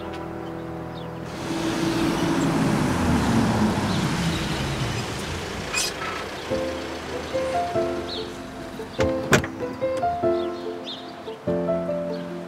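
Soft drama background music with held notes. In the first half a car drives up, its sound swelling and then falling in pitch as it slows. Two sharp clicks come about nine seconds in.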